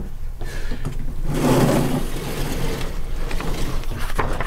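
Sliding chalkboard panel rumbling along its track for about a second, a little over a second in, with a few light knocks around it.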